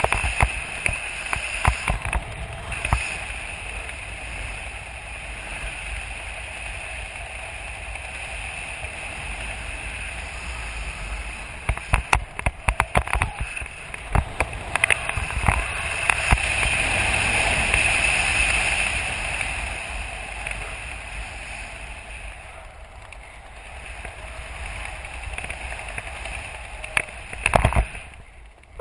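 Wind rushing over the camera's microphone during a descent under an open parachute, gusting and buffeting unevenly. It swells past the middle, eases a little later, and gives a few sharp buffets just before the end.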